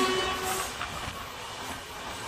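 Steady rush and rumble of a moving train, with another train passing close by on the adjacent track. The noise is loudest as the passing train's last coach clears at the start, then eases to a lower steady running noise.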